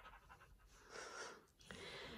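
Near silence: room tone, with one faint breath about a second in.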